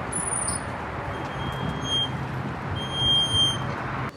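Outdoor street noise with a steady traffic rumble. Two high, steady electronic beeps sound over it, each about a second long, the first a second in and the second, slightly louder, near the end.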